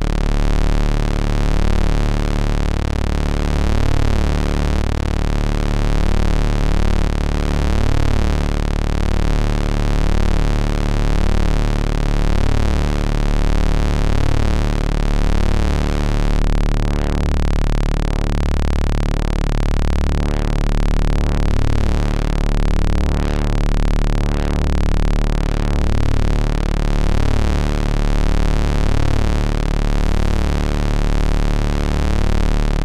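Software modular synthesizer drone: a low sawtooth oscillator at about 65 Hz (C2) run through the R_Ware Wave Interruptor, which cuts a gap into each wave cycle. The pitch holds steady while the tone colour shifts in repeating sweeps.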